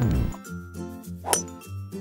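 A bright metallic clink about a second and a half in, a cartoon sound effect for the golf ball being struck, over bouncy children's cartoon background music. A falling whistle-like glide dies away at the very start.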